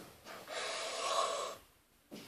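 A boy's loud, hard breath, lasting about a second, starting about half a second in.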